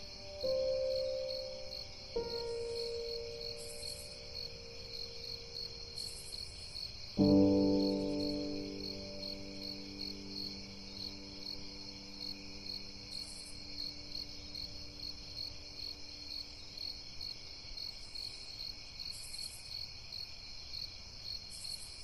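Relaxing music ending: a few slow, soft notes, the last a chord about seven seconds in that slowly dies away, over a steady, fast chirping of crickets that carries on alone afterwards.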